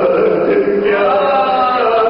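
A man's voice chanting a marsiya, a Shia elegy for Imam Hussain, in long held notes that slide up and down in pitch.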